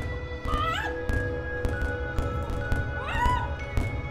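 Stage soundtrack music of held drone tones over a low rumble and scattered sharp clicks, with a rising, swooping cry sounding twice, about half a second and three seconds in.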